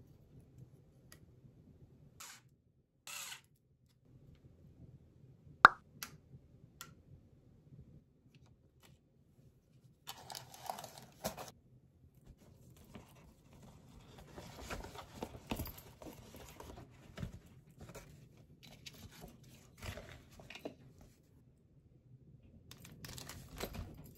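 Soft handling sounds of bento packing: a few light taps, one sharp click about six seconds in, then from about ten seconds on a steady run of rustling and crinkling of wrapping, with small knocks mixed in.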